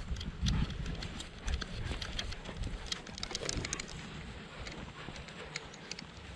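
Footsteps of a person walking two dogs on leads along a grassy path: soft, irregular footfalls with many light, sharp clicks.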